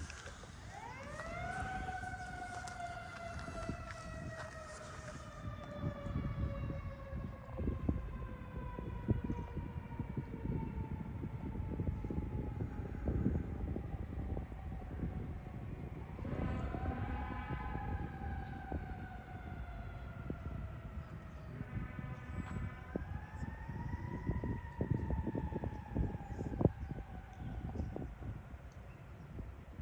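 A siren wailing three times, about a second in, about sixteen seconds in and again near the end. Each time it rises quickly and then falls slowly over several seconds. A low rumbling noise runs underneath.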